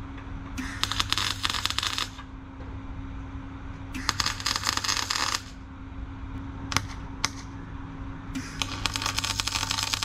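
MIG welder laying three short welds on steel, each about a second and a half of crackling and spitting from the arc, with the machine's steady hum between them.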